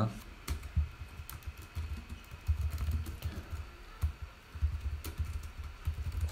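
Typing on a computer keyboard: a quick, irregular run of key presses.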